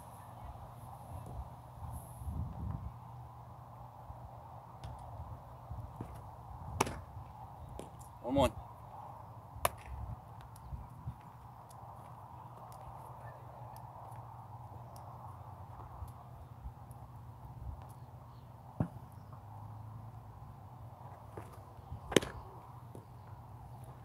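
About five sharp, distant cracks of a baseball at home plate during live pitching, spread several seconds apart, over a steady low hum.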